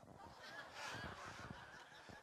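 Scattered laughter from a church congregation, quiet and spread out, in response to a joke.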